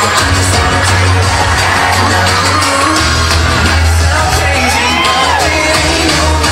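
Recorded pop song with singing, played loud over a PA system, with an audience cheering and whooping over it; a single rising-and-falling whoop stands out about five seconds in.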